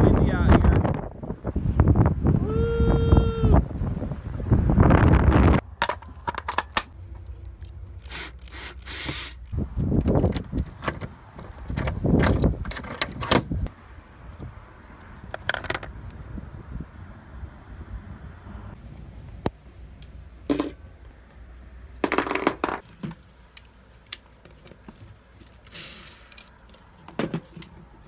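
Hands rummaging through gear in a storage locker: irregular sharp clicks, knocks and clatters as plastic cases and other items are moved about.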